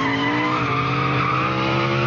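An SUV engine revving hard under load with its tires squealing. It is one strained, steady note that creeps slightly upward in pitch as the vehicle struggles with a heavy load.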